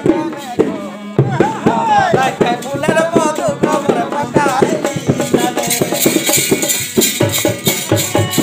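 Jhumur folk song: a male voice singing over harmonium and hand drums. About halfway through the voice stops and the drums and harmonium carry on in a quick rhythm, with bright high-pitched percussion on top.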